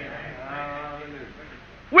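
A faint voice in the background holds one drawn-out, wavering vocal sound for about a second, in a pause of the preaching.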